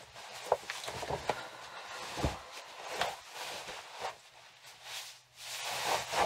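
A woman's uneven breaths and sniffles as she breathes in the scent of a jacket held to her face, with the rustle of the jacket's fabric.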